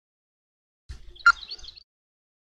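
A bird chirping briefly about a second in, one sharp note then a quick higher warble, over a low rumble.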